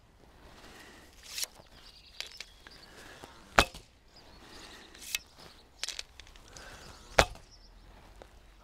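Arrows shot in quick succession from a short Turkish Sipahi horse bow of about 43 lb draw weight, each a sharp snap of string release and arrow hitting the coiled rope target. There are about five snaps, one every second or two.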